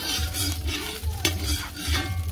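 Metal spoon stirring and scraping around a wok of sizzling hot canola oil being preheated over a wood fire, with a few sharp scrapes against the pan.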